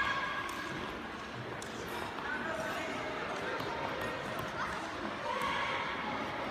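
Children's voices calling and chattering at a distance, in short scattered bursts over a steady background hiss.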